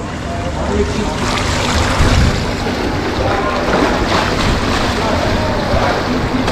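Steady splashing and churning of pool water from a young swimmer's arm strokes and flipper-driven dolphin kick as she swims butterfly, with some wind rumble on the microphone.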